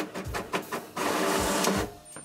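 Printer printing and feeding out a page: a run of short mechanical clicks and whirs, then a steady whir from about a second in that stops just before the printed sheet is out.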